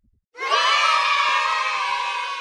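A crowd of children shouting and cheering together, starting about half a second in and held, slowly fading.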